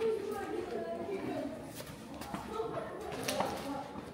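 Indistinct voices of people talking nearby in a reverberant stone room, with a few light taps that may be footsteps on the floor.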